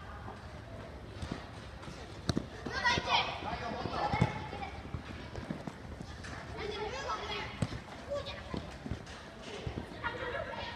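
Voices of children and onlookers calling out during a futsal game, with a few sharp thuds of the ball being kicked, the loudest around two and four seconds in.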